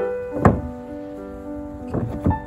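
Piano background music, with a loud wooden thunk about half a second in and a lighter knock near the end, from a 2x4 board being set down onto wooden blocks on an OSB floor.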